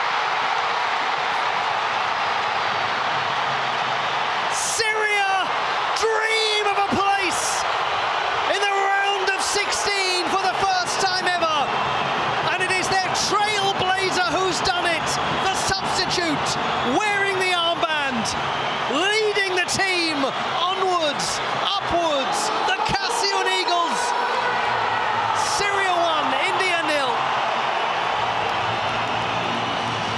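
Football stadium crowd roaring in celebration of a goal, with shouting voices rising and falling over the roar.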